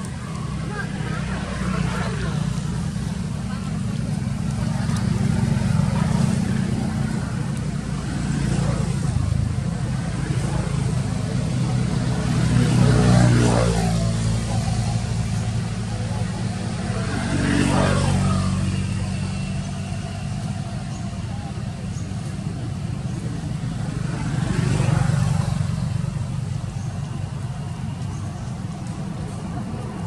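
Motor vehicles passing over a steady low engine hum. Each one swells and fades, the loudest about 13 and 18 seconds in, with another near 25 seconds.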